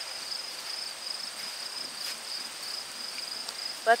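Insects trilling: a steady, high-pitched chorus with a faint pulsing.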